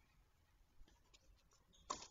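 Near silence, with a few faint ticks and a sharper knock right at the end.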